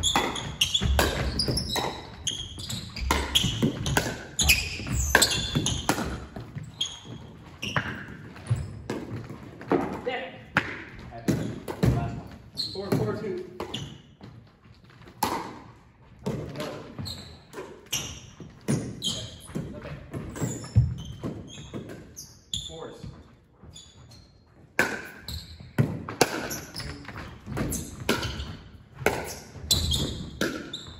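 Pickleball play in a gymnasium: sharp paddle hits on the plastic ball and the ball bouncing on the hardwood floor, echoing in the hall, with a quieter lull between points in the middle.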